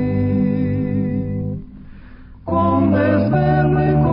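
A slow sung hymn with held, wavering notes over accompaniment; it breaks off briefly a little before halfway through and comes back at full level.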